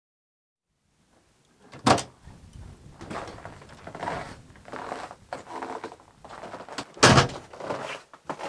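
A wooden hut door: after a second and a half of silence it bangs loudly about two seconds in, softer knocks and scrapes follow, and a second loud bang comes about seven seconds in.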